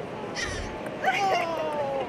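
A woman's drawn-out exclamation "Oh", its pitch falling, over other voices.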